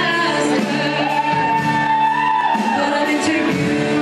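A woman singing a pop-rock song in a large hall, backed by a live band of electric guitar, drum kit and keyboard. She holds one long note near the middle.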